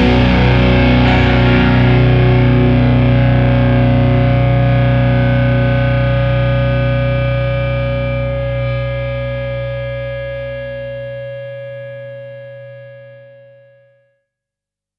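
The closing chord of a rock song, distorted electric guitar with a low bass note, held and left to ring out. It dies away slowly, the high notes thinning first, and fades out near the end.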